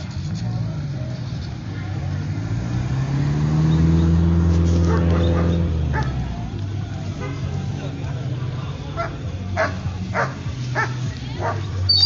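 A car passes with its engine rising and then falling away in the middle; in the last few seconds a police dog barks repeatedly in short, sharp barks.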